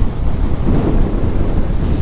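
Wind buffeting the camera microphone on an electric scooter riding at road speed: a steady low rumble.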